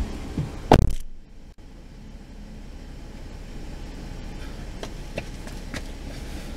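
A heavy thump a little under a second in, then a steady low rumble inside the cabin of a 2016 BMW X5 xDrive35i, growing slightly louder, with a few faint clicks.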